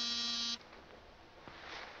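Door buzzer sounding one steady, even buzz that cuts off sharply about half a second in: a caller at the door.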